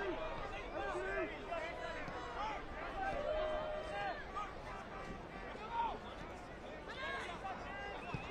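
Scattered shouts and calls from players and coaches on a soccer pitch, over the chatter of a small stadium crowd.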